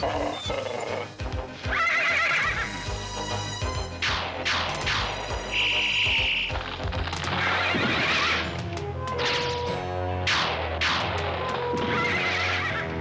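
Cartoon background music with a unicorn whinnying several times and a buzzing electric zap about six seconds in, as lightning crackles.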